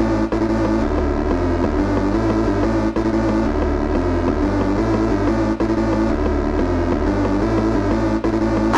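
Old-school hardcore (gabber) electronic track: sustained, layered synthesizer tones over a bass line that steps between notes every second or so, with brief breaks a few times.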